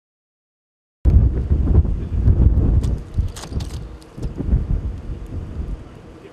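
Low, choppy storm rumble of wind and thunder that cuts in suddenly about a second in, with a few sharp crackles in the middle, easing toward the end.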